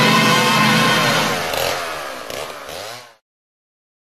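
Chainsaw sound effect running, then wavering and winding down in pitch as it fades, cutting out to silence about three seconds in.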